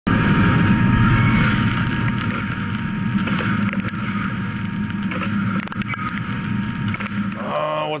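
Vertical machining center drilling steel with a Kennametal HPX carbide drill at high feed under flood coolant: a loud, steady machining noise of spindle, cutting and coolant spray, with a thin steady tone through the first half and chips ticking against the guards. A man starts speaking just before the end.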